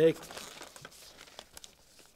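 Papers being handled: a faint crinkling rustle with scattered small crackles that fades away toward the end, a radio-drama sound effect.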